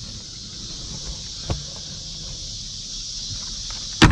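Eggs being picked up by hand from a nest box of wood shavings: faint rustling and one sharp click about a second and a half in, as of eggs knocking together. A steady high insect drone runs underneath.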